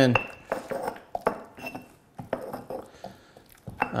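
Stone pestle stirring and knocking against a stone mortar full of mashed avocado: irregular knocks and scrapes, a couple of them with a short high ring.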